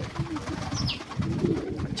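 Domestic pigeons cooing: a run of repeated low coos.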